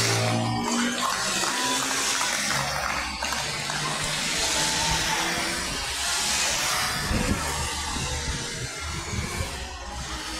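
Race convoy vehicles, a motorcycle and cars, passing one after another on a wet road. Their tyres hiss through the water, and each pass swells and fades.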